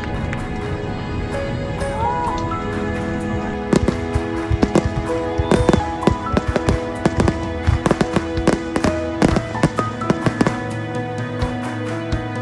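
Aerial fireworks bursting, with a quick run of sharp bangs and crackles from about four to ten seconds in, over music with long held notes.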